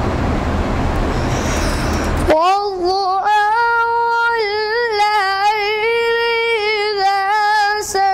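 A boy sings soz (Urdu elegiac chant) unaccompanied in a high, unbroken voice, holding long notes with small ornamental turns. The singing starts about two seconds in, just as a loud steady rushing noise cuts off abruptly.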